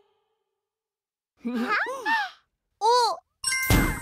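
Silence for over a second, then two short cartoon vocal sounds with swooping, arching pitch. Near the end comes a sudden noisy, shimmering sound effect with a ringing tone as the dinosaur appears.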